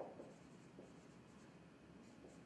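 Dry-erase marker writing on a whiteboard: faint, short strokes as letters are drawn.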